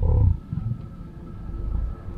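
A deep, low rumble, loudest in the first half-second and then carrying on more quietly, with a faint steady high tone above it.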